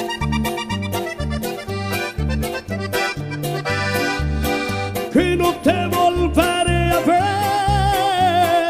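Live norteño band music: an accordion plays the melody over a bouncing bass line and a steady beat of drums. In the last few seconds a voice joins with scooping, held, wavering notes.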